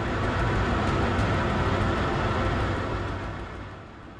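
Jet aircraft noise: a deep rumble with a rushing hiss that builds over the first second and dies away near the end.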